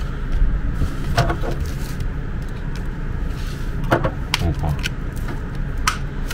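Plastic blister packaging of a memory card being handled and peeled open, giving a few sharp crinkles and clicks over a steady low background rumble.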